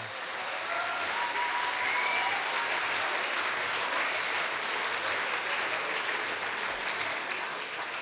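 A large hall audience applauding steadily, with a few faint calls in the first couple of seconds.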